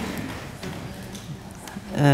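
Soft laughter trailing off into quiet room noise.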